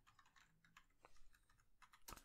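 Faint typing on a computer keyboard: an irregular run of quick key clicks.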